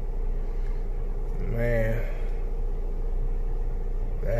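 A car engine idling, heard from inside the cabin as a steady low hum, with a short voice sound about one and a half seconds in.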